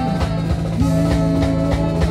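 Ska band playing live: a steady drum-kit beat under held notes from saxophones and trombone.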